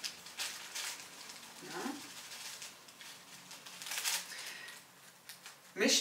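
Small clear plastic bag crinkling and rustling in short spells as dried flower confetti is shaken out of it into a tub of water.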